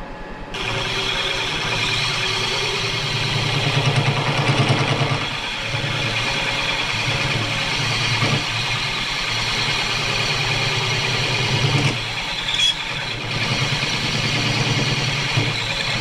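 Woodturning lathe turning a 1-inch cast iron tool-rest post while a hand-held bit cuts it: a steady scraping cutting noise over the lathe's low hum. It starts about half a second in and eases briefly twice.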